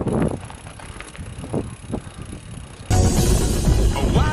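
Low outdoor noise from a mountain bike ride on a dirt track, with a few light clicks. About three seconds in, background music cuts in suddenly and becomes the loudest sound.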